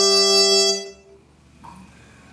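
Trumpet holding a long, bright note that stops a little under a second in, leaving only faint low room sound.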